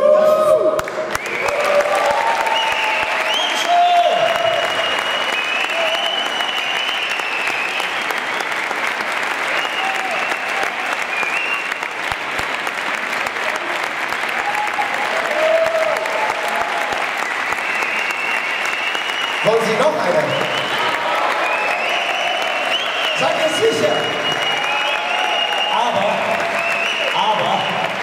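Audience applauding steadily as the singing ends, with voices calling out over the clapping, more of them in the last third.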